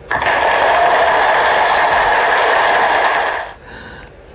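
Recorded applause from a presentation animation, played through the hall's speakers with a thin, cut-off top; one even burst that stops about three and a half seconds in.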